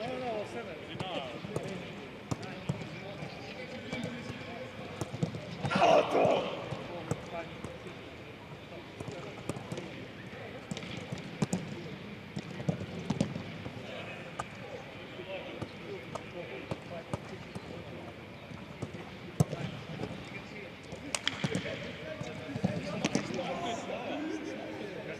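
A football being kicked and touched around by several players, sharp thuds scattered irregularly, over players' voices calling out; one loud shout about six seconds in.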